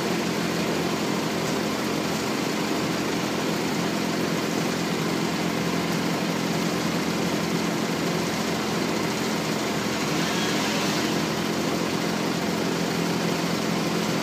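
Gehl AL20DX compact articulated loader's diesel engine idling steadily close by, holding tension on the pull rope.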